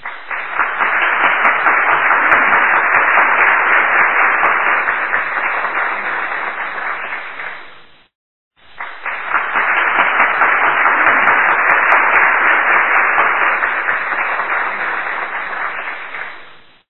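Audience applause in two stretches of about eight seconds each. Each swells in and fades out, with a brief break between them.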